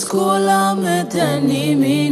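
A woman singing long, sliding and wavering notes into a studio microphone over sustained backing chords.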